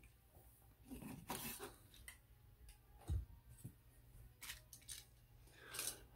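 Faint, scattered clicks and knocks of hard plastic action figures being picked up and lifted off a shelf, one after another.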